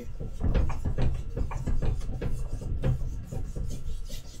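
Paintbrush scrubbing oil paint onto canvas in quick, short strokes, several a second: a dry rubbing rasp of bristles against the weave.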